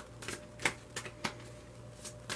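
A Vice Versa tarot deck being shuffled by hand, about five sharp card snaps in the first second or so, then a pause.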